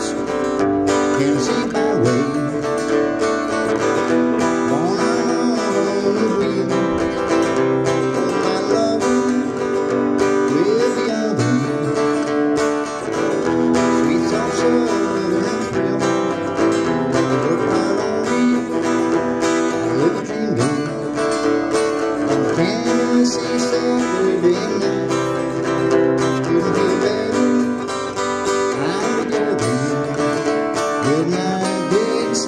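Acoustic-electric guitar strummed steadily in an instrumental passage of an upbeat country song, with a melody line that slides up and down in pitch over the chords.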